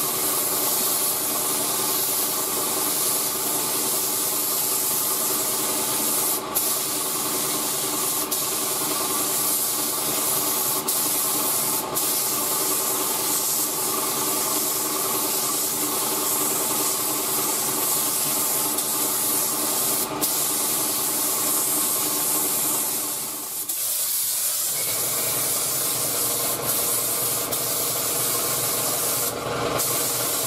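Spray gun spraying the pearl mid-coat of a tri-coat pearl white: a steady, loud hiss of atomizing air with a steady hum beneath. The hiss dips briefly about three-quarters of the way through, then carries on.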